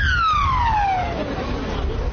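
A siren's wail sliding down in pitch and dying away about a second in, over a steady low rumble.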